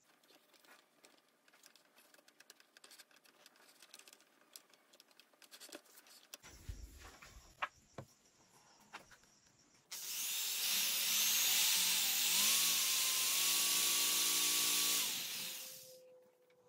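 Light clicks of wood and bar clamps being handled, then an electric power-tool motor starts with a rising whine, runs steadily for about five seconds with a loud hiss, and winds down.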